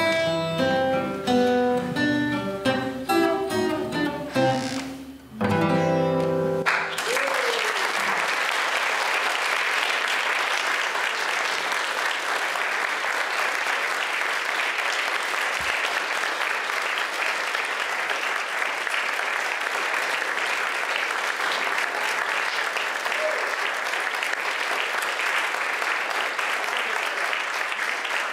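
Acoustic blues guitar playing, ending with a final strummed chord about seven seconds in, followed by steady audience applause for the rest of the time.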